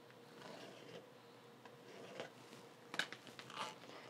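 Faint scratching of a pen drawing a line on cotton fabric along an acrylic quilting ruler. Near the end come a few light clicks and taps as the ruler is lifted and moved on the cutting mat.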